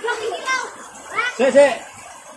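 Children's voices chattering, with one louder rising-and-falling call a little past a second in.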